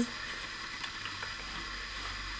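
Steady background hiss of a home recording in a small room, with a faint low hum and no distinct event.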